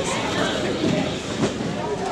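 Indistinct chatter of many voices in a large, echoing roller rink, over the steady low rolling of roller-skate wheels on the wooden floor.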